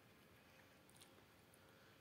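Near silence: room tone, with one faint tick about a second in.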